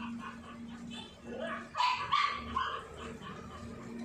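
A dog barking a few quick times about halfway through, over a steady low hum.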